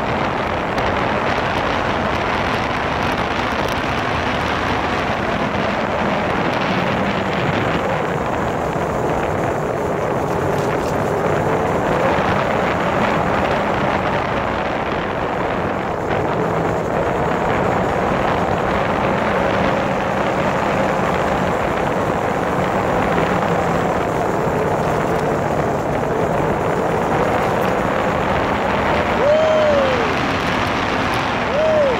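Motorcycle riding at road speed: heavy wind rushing over the microphone, with the engine running underneath and rising and falling slightly. A short falling squeak comes near the end.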